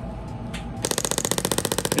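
Radial shockwave therapy handpiece with a D20-S head firing against a block of raw beef. Just under a second in it starts a rapid, even train of sharp clicks, about fifteen a second, matching its 15 Hz pulse setting.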